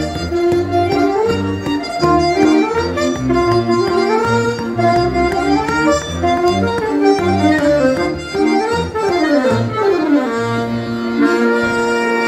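Saxophone and diatonic button accordion playing a Breton dance tune together, the accordion's bass keeping a steady pulse under the melody. Near the end the tune settles into long held notes.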